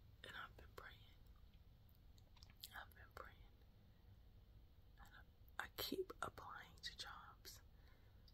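A woman whispering faintly in a few short, breathy phrases, with near silence between them.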